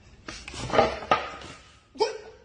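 A rushing puff as flour bursts up from under a wooden rolling pin pressed on a floured board, with a couple of sharp knocks about a second in.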